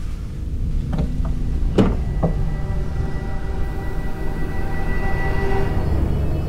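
Low rumbling drone of a suspense film score, with a few light clicks in the first couple of seconds and a sustained high tone coming in about two seconds in.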